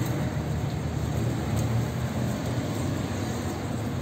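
Steady low rumble with no distinct events.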